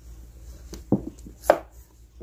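A paperback manga volume being pulled from a row of books and knocked against a wooden shelf: about three short knocks, the loudest about one and a half seconds in.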